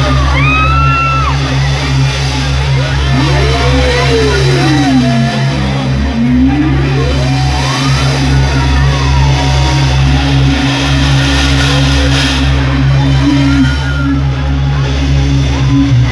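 Concert opening intro played loud through the PA: a sustained low drone with slow pitch sweeps that fall and then rise, with crowd voices shouting over it.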